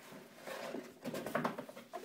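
Rubber swim fin scraping and rustling against a cardboard box as it is pulled out by hand, with a few light taps on the cardboard.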